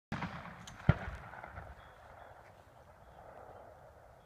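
A single sharp shotgun bang about a second in, with a short echoing tail, followed by low steady outdoor background.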